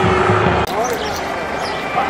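Street traffic sound: a bus engine running with low rumble, cut off abruptly less than a second in. Quieter street noise with short high chirps follows.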